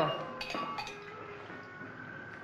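A few light clinks of hard objects in quick succession, each leaving a short ringing tone, in the manner of crockery or cutlery being handled.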